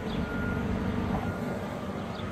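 A high electronic warning beep, like a vehicle's reversing alarm, sounding twice about a second apart over a low steady rumble of street traffic.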